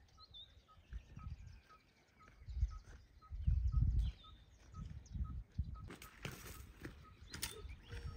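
A bird repeating a short, high note about two or three times a second. Low rumbles are loudest around the middle, and there are a couple of brief noisy bursts in the last two seconds.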